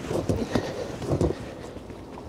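Hand pump with a hose being worked to pump rainwater out of an inflatable dinghy: two pumping strokes about a second apart, each with a sharp click.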